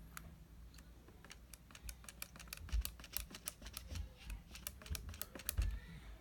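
Rapid, irregular run of small hard clicks and taps, with a few soft low bumps, from paintbrush and plastic painting gear being handled.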